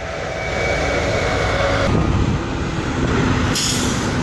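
A heavy diesel semi-truck hauling a shipping container passes close by, its engine getting louder and dropping in pitch about two seconds in as it goes past. A short hiss follows near the end.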